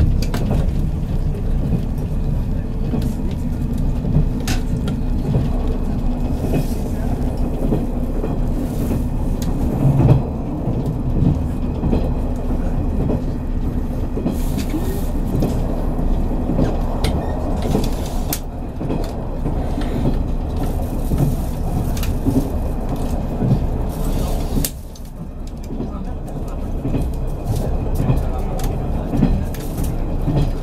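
JR 183 series electric train running at speed, heard from inside the passenger car: a steady rumble of wheels on rail and running gear with a low hum and scattered clicks from the track. The sound drops suddenly about 25 seconds in, then partly returns.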